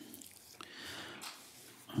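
Quiet room with faint rustling of paper being handled.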